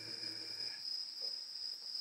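Crickets trilling steadily in one high-pitched tone, under the tail of a man's drawn-out hesitant "ehh" that fades out less than a second in.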